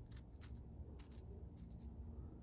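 Faint scratching and light ticks of a thumbnail rubbing corrosion residue off a small steel test piece, a few separate ticks over the two seconds, over a low room hum.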